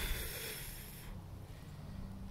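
A long breath blown at a pinwheel: an airy hiss that fades out about a second in, leaving only a faint low rumble.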